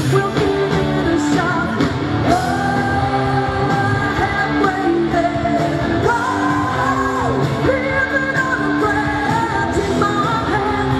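Live pop-rock band playing through a stage PA, with guitars, drums and a singer holding long sung notes.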